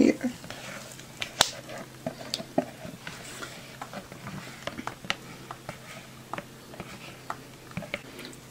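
Light clicks, taps and scrapes of plastic kitchenware as a thick custard is poured from a plastic bowl into a plastic tub and a spatula scrapes the bowl out, with one sharper knock about one and a half seconds in.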